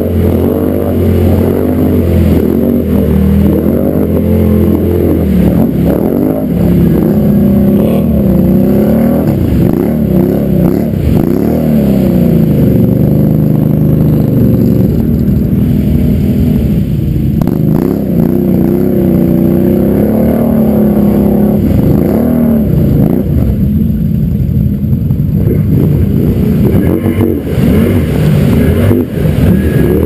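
Can-Am ATV engine working through deep muddy water, its revs rising and falling every second or two.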